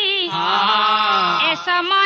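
Pala devotional singing: voices chanting a long held note, with a lower voice joining in the middle for about a second before dropping out.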